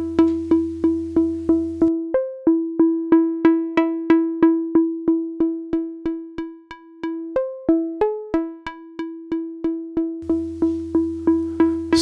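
Software modular synth patch: a West Coast-style complex oscillator plucked by a low-pass gate, repeating short bright notes about three times a second on one steady pitch. A few notes jump higher about two seconds in and again near seven and eight seconds, as the sequencer steps are dialled to new pitches.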